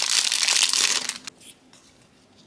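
Thin clear plastic bag crinkling as fingers pull it open, stopping about a second in, then a few faint clicks.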